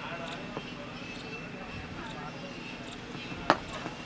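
Faint voices across the field, then a single sharp crack of a cricket bat hitting the ball about three and a half seconds in.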